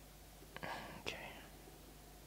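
A man softly saying "okay" in a breathy, near-whispered voice about half a second in, over a faint steady low hum.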